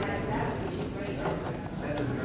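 Low murmur of voices in a large room, with a few light taps.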